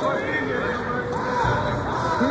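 Raised voices shouting in a gym, with one wavering, drawn-out call rising and falling in pitch. A brief low thump comes about one and a half seconds in.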